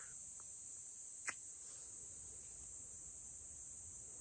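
Faint, steady chirring of insects in the summer grass, with one short click about a second in.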